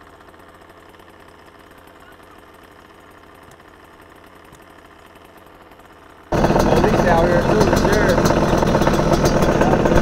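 Low, even background hum for about six seconds, then a dirt bike engine idling loudly, cutting in suddenly.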